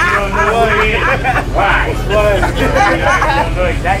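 Men's voices talking over one another in casual conversation, with a laugh near the end and a steady low hum underneath.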